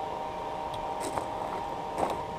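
Forge air blower running with a steady hum, a few faint light clicks over it.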